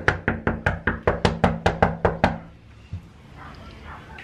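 Knuckles knocking on a door: a rapid, even run of over a dozen knocks, about five a second, that stops about two and a half seconds in.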